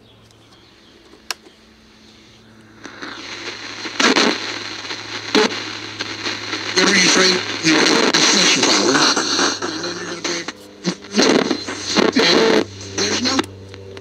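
General Electric P925 transistor radio: a few switch clicks as the volume and power knob is worked, then after about three seconds an AM station's talk comes in through the small speaker with hiss, dropping out briefly a couple of times near the end. The set is only working intermittently, typical of the faulty power switch being diagnosed.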